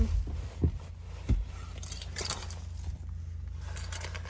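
Quiet car-cabin ambience: a steady low rumble with a few light knocks and clicks, about half a second, a second and a quarter, and two seconds in.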